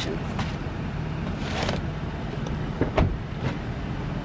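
Cardboard cases of snack boxes being shifted and set down in a loaded vehicle's cargo area, with a rustle about one and a half seconds in and a knock about three seconds in, over a steady low rumble of a vehicle.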